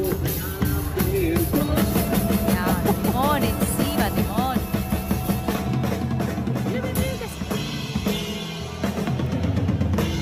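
Rock band playing live with an 11-year-old at the drum kit: a fast, dense beat of kick drum, snare and cymbal crashes over the rest of the band.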